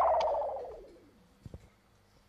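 The last chord of a live band's song slides down in pitch and fades out within about a second, then near silence with a couple of faint low thumps.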